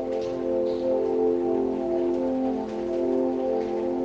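Soft meditation background music of layered, sustained tones that hold steady and shift slowly, like a drone or pad.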